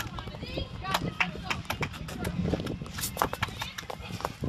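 Athletic shoes scraping and slapping on a concrete shot put circle as the thrower glides across it and throws: a quick, irregular series of sharp scuffs and steps.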